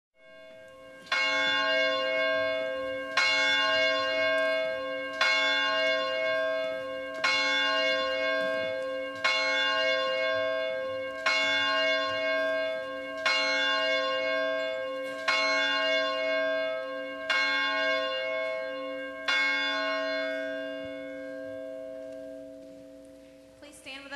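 A single church bell tolling ten times at the same pitch, one stroke about every two seconds, each stroke ringing on into the next. The last stroke fades away near the end.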